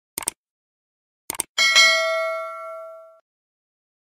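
Subscribe-button animation sound effect: a quick double mouse click, another double click about a second later, then a notification-bell ding that rings out and fades over about a second and a half.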